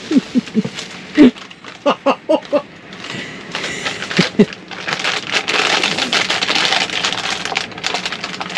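A few short bursts of laughter, then from about four seconds in a loud crinkling rustle of plastic packaging as a rubbish bag is rummaged through.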